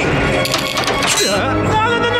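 Animated-series soundtrack: music with sci-fi sound effects. A run of clattering noise starts about half a second in, and a short rising tone follows just after the middle, over held tones.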